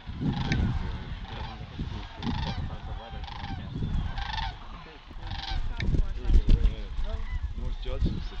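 A flock of sandhill cranes calling, several separate calls following one another roughly once a second. Heavy low rumbling on the microphone runs underneath and is loudest about six to seven seconds in.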